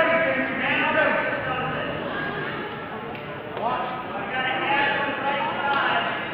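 Indistinct shouting voices across a school gym during a wrestling bout, in two stretches: at the start, and again from about three and a half seconds in.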